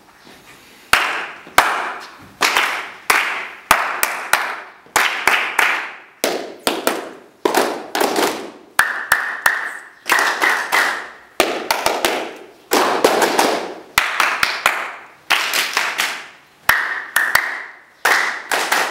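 Hand-clapping in short rhythmic phrases, one person clapping a pattern and a group clapping it back in turn, a dozen or so phrases. Each clap rings briefly in the hard-walled room.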